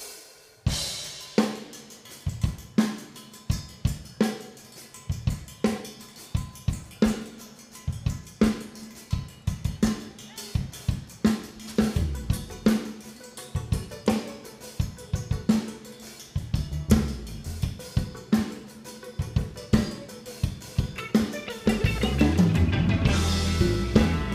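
Drum kit playing a steady groove alone as the intro to a song, with kick, snare and cymbals. Low bass notes join about two-thirds of the way through, and the band fills in near the end.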